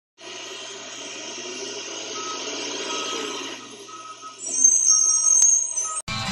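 A refuse truck running, with a short high beep repeating roughly once a second. Near the end comes a loud high-pitched squeal, the loudest sound, with a single sharp click just before it stops.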